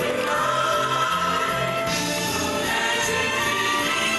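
Stage-show music with a choir singing long held notes over the accompaniment.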